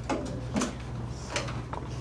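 Three short scrapes and clicks of classroom handling noise, about a second and less apart, over a steady low hum.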